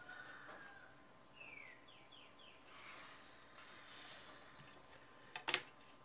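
Quiet handling of a clear plastic ruler on paper: faint rustling and sliding as it is moved into place and held down, with a couple of light taps near the end. A few faint, quick falling chirps sound in the background early on.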